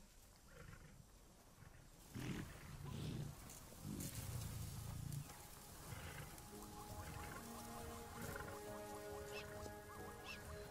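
Lioness growling low, a few separate rumbles from about two to five seconds in. Soft sustained music notes come in a little past the middle.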